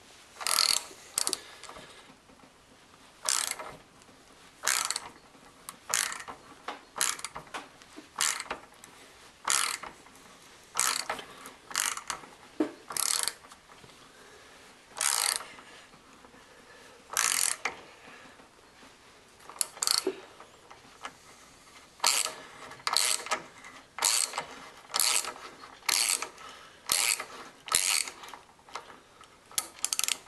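Socket ratchet clicking in short bursts, roughly one a second with uneven pauses, on each back-swing while turning a heli-coil tap that cuts new threads in an outboard motor's cylinder head.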